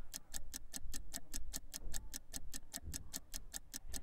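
Countdown-clock ticking sound effect: rapid, even ticks, about seven a second, marking time running out on a timed TV shopping deal.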